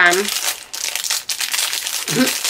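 Clear plastic packaging bag crinkling as it is handled, a rapid run of crackles.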